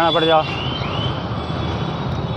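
A road vehicle's engine running steadily with a low, even hum. Two faint rising chirps come about half a second and a second in.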